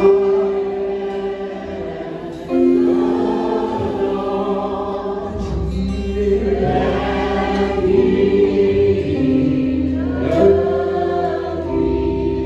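Live gospel worship music: voices singing long held notes over keyboard and electric guitar with a steady bass line.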